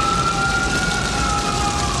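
A siren wailing in one long sweep, rising in pitch and then slowly falling, over the loud steady rush of a building fire.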